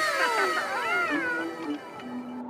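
Seagulls crying, several overlapping falling calls, over a held note of background music.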